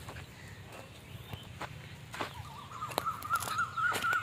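Outdoor bird sounds: a wavering, warbling whistle-like call comes in about two and a half seconds in and runs on, over faint background noise with a few light clicks.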